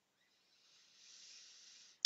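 A woman's slow, deep breath in, heard faintly as a soft hiss close to a headset microphone. It swells from about half a second in and lasts over a second.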